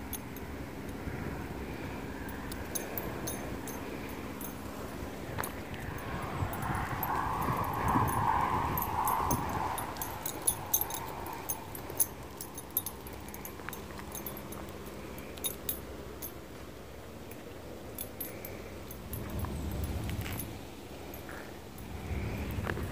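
A dog's collar tags jingling now and then in small scattered clicks, over low handling noise. A soft rushing sound swells for a few seconds near the middle.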